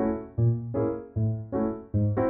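Background music: piano chords struck in a steady pulse, about two or three a second, each dying away before the next.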